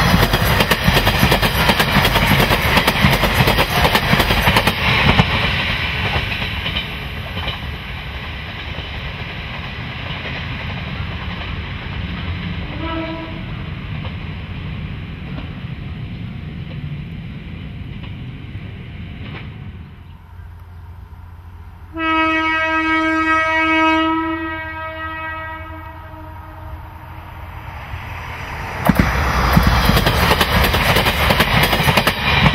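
Diesel railcar running noise fading away, a short horn note midway, then one long single-pitched typhon horn blast of about two and a half seconds from a JR KiHa 40-series diesel railcar. Near the end a train's running noise comes in loud again.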